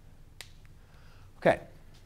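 Quiet room tone broken by a faint, sharp click about half a second in, with a weaker tick just after.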